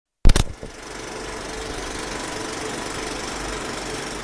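Film projector sound effect: a quick burst of loud clacks as it starts, then a steady mechanical rattle and whir of the running projector.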